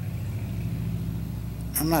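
A steady low mechanical hum, with a man's voice starting near the end.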